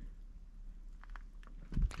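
Quiet outdoor background: a low steady rumble with a few faint clicks, then a man's voice begins near the end.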